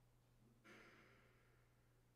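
Near silence: room tone with a steady low hum. About two-thirds of a second in, a single soft breathy sound starts suddenly and fades away over about a second.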